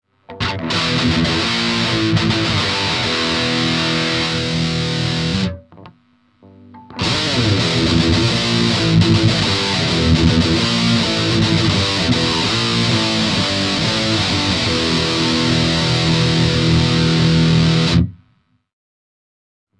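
Electric guitar played through a Boss MT-2 Metal Zone distortion pedal, giving a heavily distorted metal tone. The playing stops about five and a half seconds in and starts again after a short break of about a second and a half.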